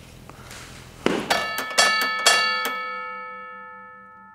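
Outro logo sting of bell-like chimes: a swell about a second in, then five quick strikes whose ringing notes hold and slowly fade away.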